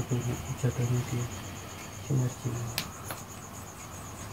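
An insect, most likely a cricket, chirping in a fast, even, high-pitched pulse throughout, under a low male voice that mumbles briefly in the first second and again about two seconds in.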